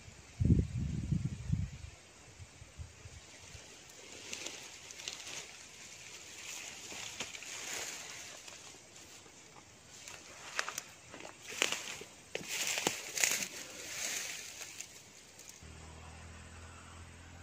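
Handling and rustling noises: a few dull bumps in the first two seconds, then scattered crackling rustles of leaves and undergrowth that come thickest in the last few seconds.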